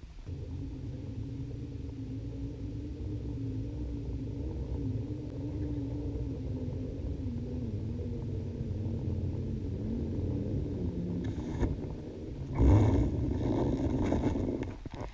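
Steady low underwater rumble with a faint wavering drone, as heard through an underwater camera during a freedive descent at depth. Near the end comes a louder burst of knocking and rustling as a hand grabs the tag on the dive line at the bottom plate.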